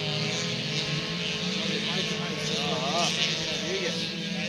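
Engines of several autocross cars running together as they race round a dirt track, a steady mechanical drone.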